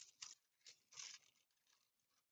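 Faint rustling and crinkling of curled paper petals being handled and tucked around a stick, in four or so short bursts.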